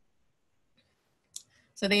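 Near silence, broken by one brief click about a second and a half in; a woman's voice starts speaking just before the end.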